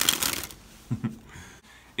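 A deck of thick, linen-finish Ellusionist Super Bee playing cards sprung from one hand to the other: a rapid flutter of cards lasting about half a second, followed by a short, fainter sound about a second in.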